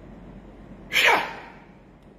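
A man's short, sudden, breathy vocal burst about a second in, falling in pitch as it fades over about half a second.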